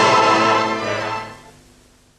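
Symphony orchestra holding a sustained chord, which fades out over the second half.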